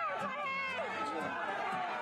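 Many overlapping voices of a crowd of fans talking and calling out at once, in a steady hubbub.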